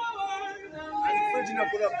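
Music with a singing voice holding long notes that waver slightly in pitch.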